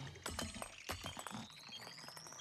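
Sound effect of an animated grenade beeping rhythmically, with a thin electronic whine rising steadily in pitch from about a second in, over faint music.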